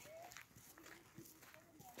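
Near silence, with a few faint, short squeaky calls that rise and fall in pitch, one near the start and one near the end.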